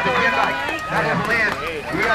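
Speech: a man's voice calling the BMX race.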